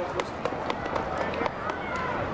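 Indistinct voices with many scattered sharp clicks or knocks, irregular and close together.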